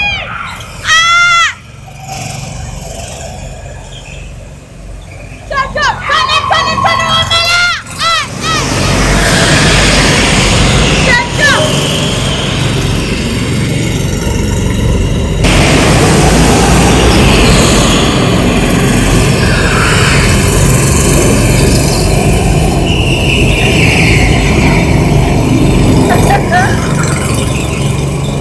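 Go-kart engines running on an indoor track, a loud, dense noise with a strong low end from about eight seconds in. Before that come high, rising-and-falling whoops and shouts of people.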